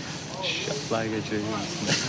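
Quiet talking from young men's voices, lower in level than the narration around it, with a short hiss about half a second in.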